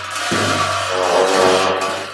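Tibetan Buddhist monastic ritual music: a deep, steady drone with a bright wash of cymbals over it, played loudly by the monks.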